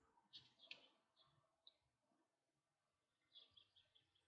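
Near silence with a few faint, short clicks: a glass jar being handled and turned in the hands, with fingers pressing plasticine slices onto the glass. A quick run of the clicks comes near the end.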